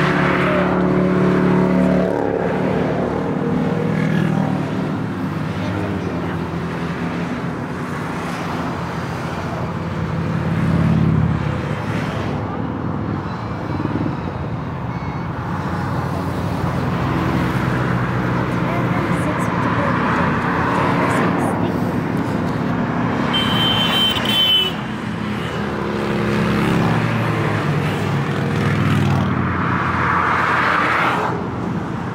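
Motorcycles, three-wheelers and then cars passing below on a motorway, their engine and tyre noise swelling and fading as each goes by, loudest at the start, again about ten seconds in and near the end.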